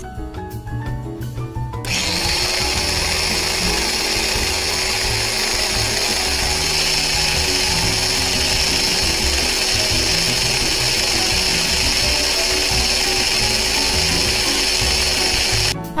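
Small electric blender with a glass bowl running steadily, chopping strawberries and banana into a pulp. The motor starts about two seconds in and runs with a constant hum, stopping just before the end.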